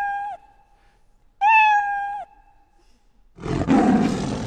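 Scratch's built-in cat meow sound effect plays twice, two identical meows under a second each, as the program loops. Near the end a loud roar sound effect cuts in, the program's signal that the mouse pointer is touching the cat sprite.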